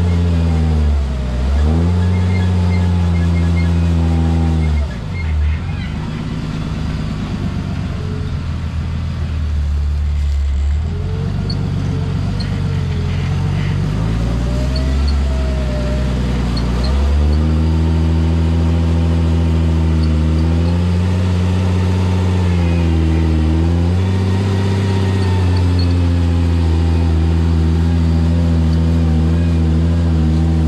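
Jeep rock crawler's engine running at low revs under load as it climbs a rock ledge, its pitch dropping sharply and picking back up several times as the throttle is eased off and fed again.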